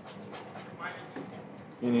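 Quiet classroom room sound with a faint voice murmuring, then the teacher starts speaking again near the end.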